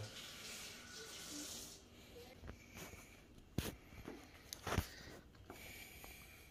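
A Shih Tzu eating small pieces of chicken liver off a plastic plate: faint eating sounds with a few sharp clicks, the two loudest in the second half.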